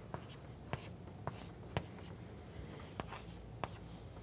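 Chalk writing on a blackboard: a series of about six sharp taps as the chalk strikes the board, with light scratching between them.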